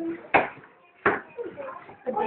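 Two sharp knocks, about three quarters of a second apart, the first the louder, among children's voices in a small room.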